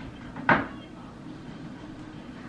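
A door shutting: one sharp knock about half a second in that dies away quickly.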